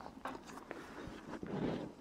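Faint handling noise of bungee-cord ball ties being looped around the top bar of a light frame: soft rustling with a few small clicks.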